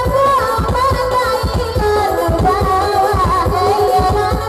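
Rabab pasisia ensemble playing live: a woman sings an ornamented, wavering melody over a bowed rabab fiddle, backed by an electronic keyboard (orgen) with a steady beat.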